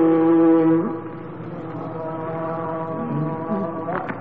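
Male Egyptian reciter chanting the Quran (tilawa), holding one long melodic note that breaks off about a second in, followed by a quieter held tone.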